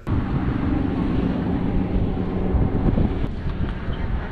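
Car driving along a gravel desert road: steady, loud tyre and engine rumble with wind buffeting the microphone.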